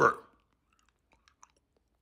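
The end of a spoken word, then a pause of near silence with a few faint, brief clicks, typical of mouth noises from a close microphone.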